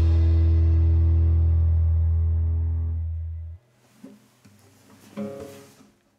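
The song's final chord, a held low bass note under guitars, rings out and fades, then stops abruptly about three and a half seconds in. A few faint knocks follow, with a brief string sound from a guitar being handled near the end.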